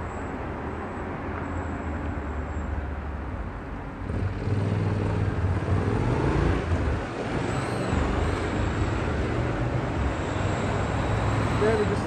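Street traffic: the engine and tyre noise of passing cars, a steady rumble that grows louder about four seconds in and stays up.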